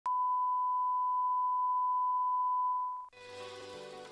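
A steady, single-pitched line-up test tone, the reference tone played with colour bars. It holds for about three seconds and fades out, then music begins.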